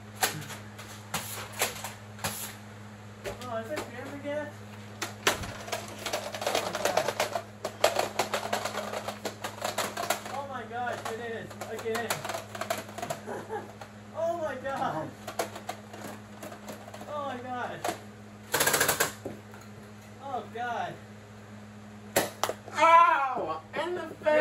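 Scattered sharp clicks and snaps of Nerf foam-dart blasters being primed and fired, with voices calling out and one louder burst about three-quarters of the way through.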